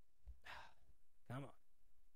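A short, quiet breath about half a second in, followed by a single brief spoken syllable.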